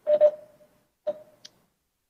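Two short clicks about a second apart, each followed by a brief ringing tone that fades quickly.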